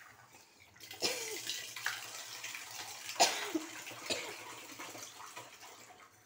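A metal ladle stirring thick tamarind curry in a metal pot: the liquid sloshes, and the ladle clinks against the pot a few times. The stirring starts about a second in, and the loudest clink comes about three seconds in.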